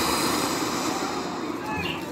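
Ground fountain firework spraying sparks with a steady hiss that slowly fades.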